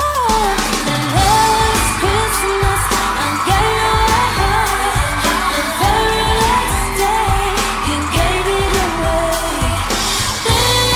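A pop-style Christmas song: a singing voice carrying the melody over a steady drum beat and bass.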